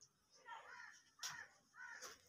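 Near quiet, with three faint, short, harsh calls in the background: one about half a second in, one just past a second, and one near the end.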